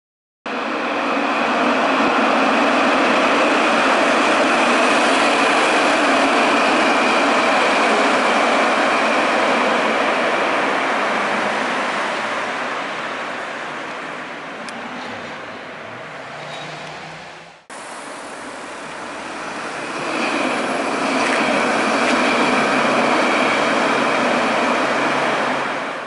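A tram running along its track, with a steady high whine over the rolling noise. It is loud at first and then fades away. After a sudden cut about 18 seconds in, a second pass swells up.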